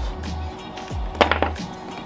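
Background music with a steady bass line; a little past a second in, two or three quick wooden knocks as one pine board is set against another on the bench.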